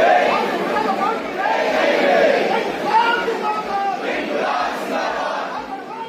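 A large crowd, mostly women, with many voices raised and shouting at once in a dense clamour. It fades down near the end.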